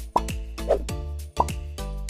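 Playful background music with a steady beat, with quick falling-pitch pops, one just after the start and one about one and a half seconds in.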